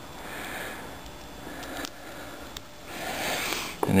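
Faint handling noise, with a couple of small clicks about two seconds in, as a diode's wire lead is pushed into yellow plastic crimp connectors. Breathing close to the microphone swells near the end.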